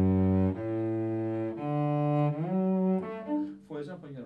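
A cello bowed in a few long sustained notes, with an audible upward slide into a new note a little past halfway and a couple of short notes near the end. This is a demonstration of a deliberate delayed or new-bow shift.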